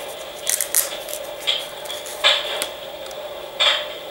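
A handful of short rustles and scrapes as a small silver pocket microscope is drawn out of its soft black case, over a steady background hum.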